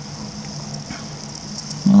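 Steady low hum with a faint high hiss: room tone, with no distinct event.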